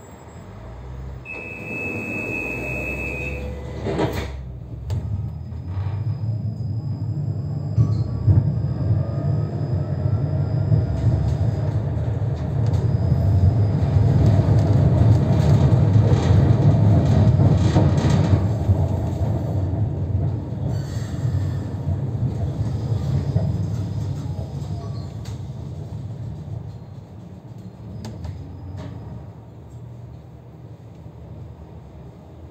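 Tram pulling away from a stop: a steady high beep for about two seconds, a sharp clunk of the doors closing about four seconds in, then the rumble of the tram's wheels on the rails and its motors building up, loudest around the middle and easing off toward the end.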